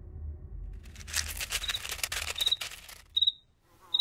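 Insect sound effect: dense, rapid clicking with a short high chirp about every three-quarters of a second, starting about a second in. It stops abruptly with a loud click just after three seconds, over a low rumble that fades out.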